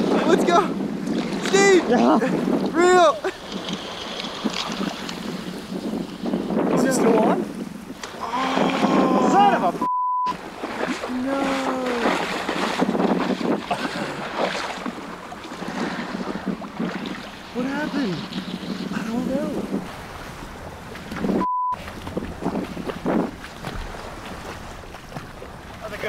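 Raised voices calling out over a steady wash of wind and shallow water. Two short censor bleeps at one steady tone cut in, about ten seconds in and again a little past twenty.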